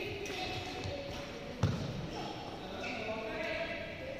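Indistinct voices echoing in a large indoor sports hall, with one sharp thud about one and a half seconds in.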